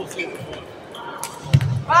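Table tennis rally: the celluloid-type ball clicking off paddles and the table a few times, ending with a heavier thump about one and a half seconds in as the point finishes.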